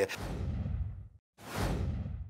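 Whoosh sound effects for an animated transition: a swoosh that sweeps downward from a high hiss to a low rumble over about a second and cuts off, then a second whoosh beginning after a short gap.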